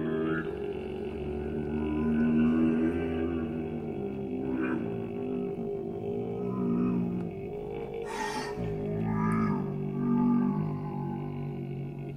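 Contemporary chamber music for voice, sampler, flute, saxophone and accordion: a dense, sustained low chord with slowly shifting tones enters abruptly at the start, with breathy noises about four and eight seconds in.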